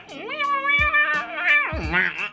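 A man vocally imitating a wailing guitar: one loud sung note that slides up, holds with a slight wobble, and drops away near the end, over quiet background music.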